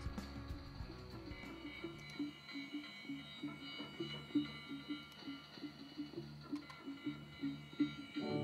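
Quiet opening of a live band song: a soft short note repeated about three times a second over faint held high tones.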